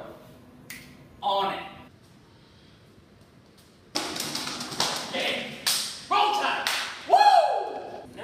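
A brief spoken word, then from about four seconds in, voices mixed with a run of sharp taps and clatter, ending in a call that falls in pitch.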